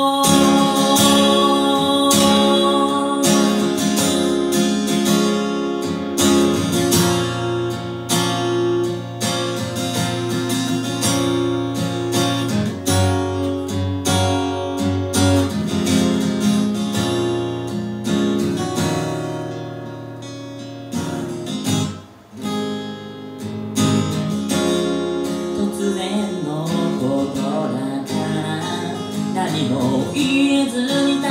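Acoustic guitar played alone in an instrumental passage of a song, strummed and picked with ringing notes, dropping to a brief quiet moment about two-thirds through before picking up again.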